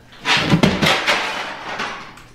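Shower wall panel being pried off the drywall with a crowbar: a loud cracking, tearing crash about a third of a second in, trailing off over the next second or so.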